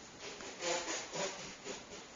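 Sleeping Neapolitan Mastiff puppies stirring: three short raspy sounds about half a second apart.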